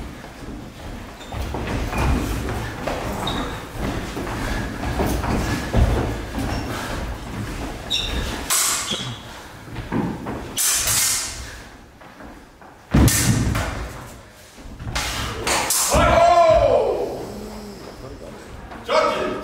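Longsword fencing bout in an echoing hall: footwork and thuds on a wooden floor, with several sharp sword strikes spread through, the loudest about thirteen seconds in. Near the end a voice lets out a long exclamation that rises and falls.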